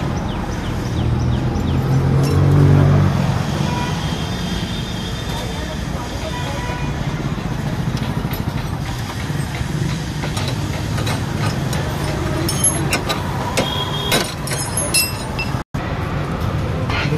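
Steady road-traffic rumble, with a motor vehicle passing loudest about two to three seconds in. Near the end come a few sharp metallic clinks of hand tools on an e-rickshaw's rear axle hub.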